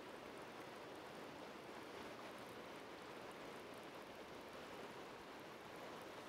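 Faint, steady rush of flowing river water, with no other distinct sound.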